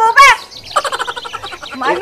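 A person's voice making a high, rapidly pulsed sound without words, between short bits of speech.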